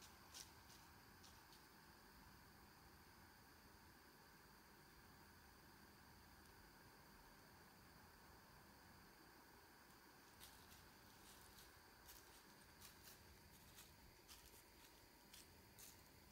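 Near silence, with faint scattered ticks and crackles: a few just after the start and more from about ten seconds in.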